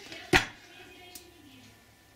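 A single sharp knock of a metal food can being handled on the kitchen counter about a third of a second in, then a faint tap about a second in.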